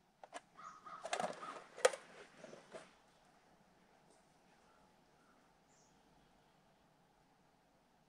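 A few faint clicks and rough, scratchy sounds in the first three seconds, the sharpest click a little under two seconds in, then near silence.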